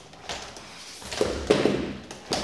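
Homemade 3D-printed robot dog's leg motors buzzing and its plastic legs knocking as it jerks and wobbles trying to stand up, louder about a second in. The unsteadiness comes from crude PID control of soft, low-stiffness motors running on half their rated voltage.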